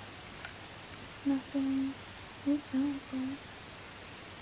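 A person humming to herself in two short phrases, two notes and then three, all at nearly the same low pitch.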